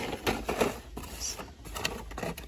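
Hot Wheels cars in plastic blister packs on cardboard cards clacking and rustling as they are flipped through by hand, a rapid run of irregular light clicks.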